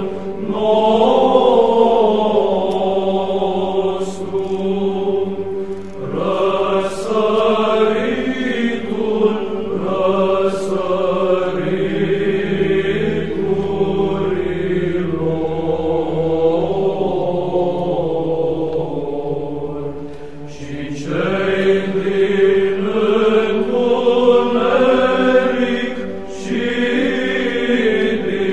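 Orthodox church chant: voices singing a slow, drawn-out melody over a steady held drone, with a short break between phrases about 20 seconds in.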